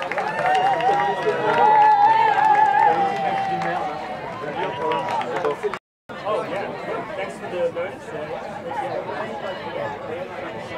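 Many voices talking and calling out at once from a group of players and supporters. The chatter is loudest in the first few seconds. The sound drops out completely for a moment about six seconds in.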